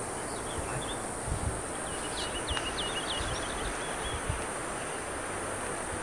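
Outdoor ambience: a steady hiss, with a bird chirping a quick run of short high notes about two seconds in and a few low bumps on the microphone.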